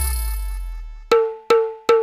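A break in a Bollywood–Timli DJ remix: the beat drops out and a deep bass note fades away over about a second. Then three evenly spaced, ringing, pitched percussion hits follow, about two and a half a second.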